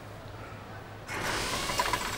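A short mechanical rattling whir starts about a second in and lasts just over a second.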